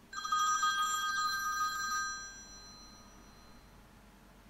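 A telephone ringing: one warbling ring, loud for about two seconds and then fading away. It is the unanswered phone call that ends the track.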